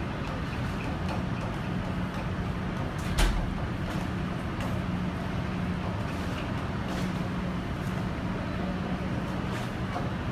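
Steady low mechanical hum over a wash of background noise, typical of docked ships' machinery, with a single knock about three seconds in.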